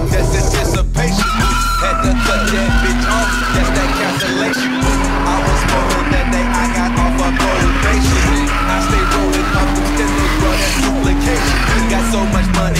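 BMW engine held at high revs while its tyres squeal, the car sliding round in a drift. The revs climb about a second in, hold with slight wavering, and drop away near the end.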